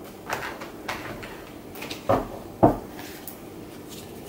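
A deck of tarot cards being shuffled by hand: soft card handling with several short, sharp taps and knocks, the two loudest a little after two seconds in, about half a second apart.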